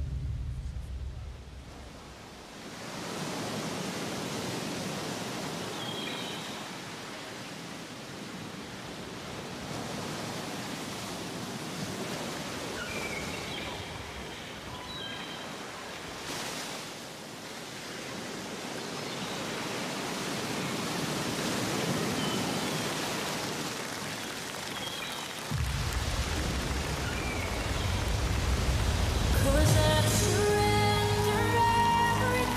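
Ocean surf sound effect: a steady wash of waves, swelling and easing slowly, with a few faint high chirps now and then. A low music bass comes in near the end.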